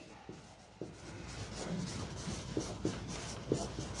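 Dry-erase marker writing on a whiteboard: a series of short, faint scratching strokes.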